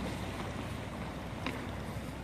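Steady outdoor noise of wind and water at the shore, mostly a low rumble, with a faint click about one and a half seconds in.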